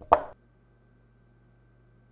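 A single short clack of a chess piece set down on a board: the move sound effect of an animated game replay.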